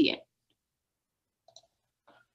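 A woman's spoken word ends, then near silence broken by one faint, very short click about one and a half seconds in.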